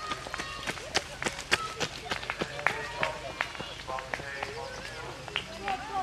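Running footsteps on wet tarmac: a runner's footfalls as he passes close by and moves away, heard as a string of sharp, irregular clicks, with people talking quietly in the background.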